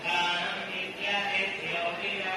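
Hindu temple priests chanting Vedic mantras, their voices rising and falling in a continuous group chant.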